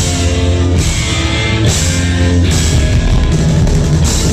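A live psychobilly band plays loud and full: electric guitar and bass over drums, with cymbal crashes about once a second. The passage is instrumental.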